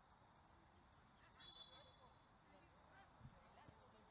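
Near silence: faint open-air ambience from the pitch, with a brief faint sound about a second and a half in.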